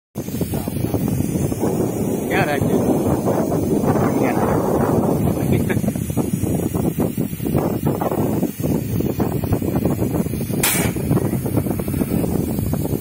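Loud, steady machinery rumble with people's voices over it, and one short burst of hissing air about ten and a half seconds in.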